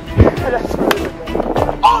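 A plastic wiffle ball bat strikes the hollow plastic wiffle ball once, a sharp crack about a second in, as a ball is put in play. A low thump comes shortly before it, with voices around.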